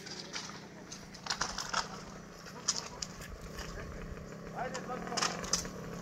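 Scattered sharp knocks and clinks over a steady low hum, with a short voice about five seconds in.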